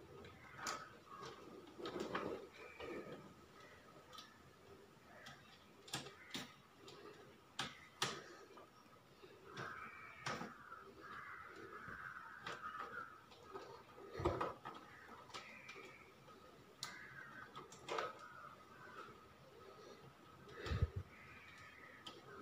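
Scattered light clicks and knocks, one every second or two, from hands handling the wires and breakers of a distribution board.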